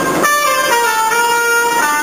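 Trumpet playing long held notes in a tiled subway passage: a short burst of noise at the very start, then a note that drops to a lower long-held note about two-thirds of a second in and steps back up near the end.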